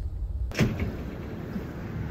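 Low rumble of a car idling, heard from inside the cabin, cut off abruptly about half a second in by a sharp thump. A steady outdoor background hum follows.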